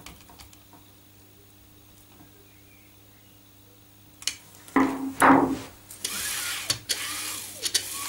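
Screwdriver tightening a screw through two plastic cable clips into a plastic carriage: after about four seconds of faint room hum, a click and two short, loud creaks as the screw bites, then a steady rustling hiss near the end.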